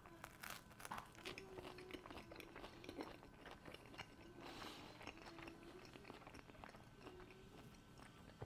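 Faint crunching and chewing as a person bites into and eats a slice of stonebaked pizza with a crusty, crunchy base, a scatter of small crunches throughout.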